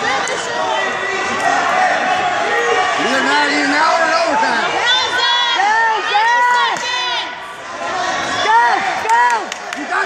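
Spectators in a gym crowd shouting and cheering on a wrestler, many voices at once, with a run of short, repeated yells about halfway through and again near the end.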